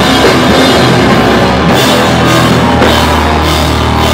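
Loud live hardcore band playing, drums and cymbal crashes over guitar and bass, with a low note held through the second half.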